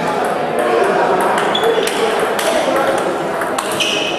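Table tennis balls clicking on tables and bats, several irregular sharp clicks, a couple with a short ringing ping, over a steady babble of voices in a large hall.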